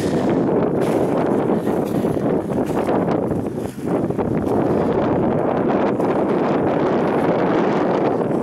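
Wind blowing across the camera's microphone, a loud, steady rushing with a short lull just under four seconds in.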